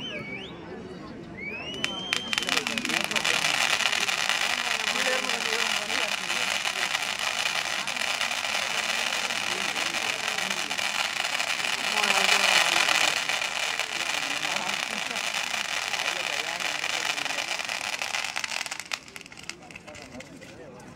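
A long string of firecrackers going off in one continuous rapid crackle for about seventeen seconds, loudest around the middle and stopping abruptly near the end. A short rising whistle comes just before the crackle starts.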